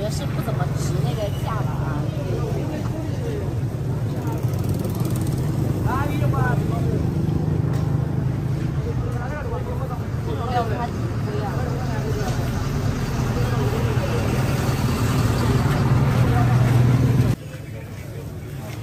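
People talking over a steady low hum, with more voices in the background. The hum and the talk cut off suddenly near the end.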